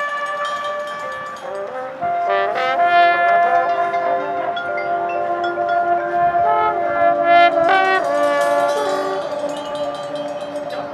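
Marching band brass playing held chords, with shimmering chime flourishes from the front ensemble twice, about two and a half and seven and a half seconds in.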